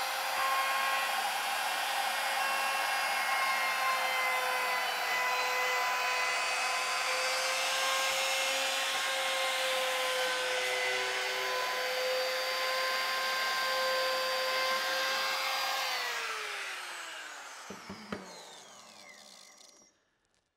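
Trim router with an eighth-inch roundover bit running at a steady high whine while cutting a roundover along wooden edges. Near the end it is switched off and spins down, its pitch falling over about three seconds.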